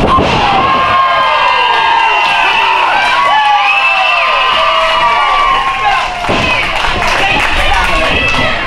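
A small audience yelling and cheering, many voices overlapping with plenty of high-pitched shouts, with a thump from the ring a little after six seconds in.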